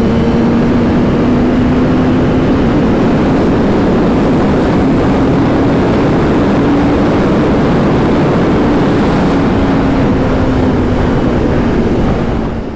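Kawasaki ZX-10R sportbike's inline-four engine cruising at a steady note, mostly buried under loud wind rush on the microphone.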